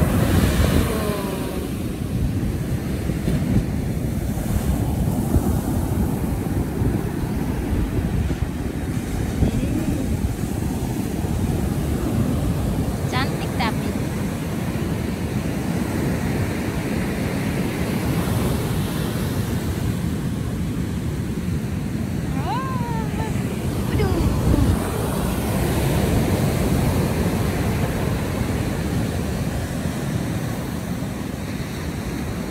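Ocean surf breaking and washing up the beach in a continuous heavy rumble, with wind buffeting the microphone.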